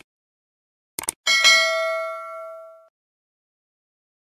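Sound effect of two quick computer mouse clicks about a second in, followed by a single notification bell ding that rings out and fades over about a second and a half.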